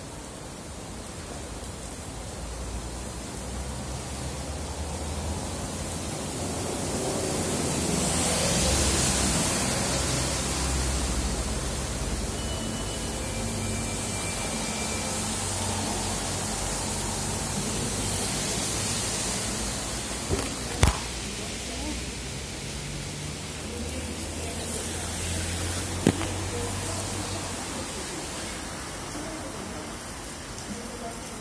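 Steady rain hiss, swelling for a few seconds about a third of the way in, with two sharp knocks later on.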